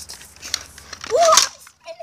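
A child's short voiced exclamation, rising in pitch, about a second in. Before it there are light clicks and rustling from the phone being handled.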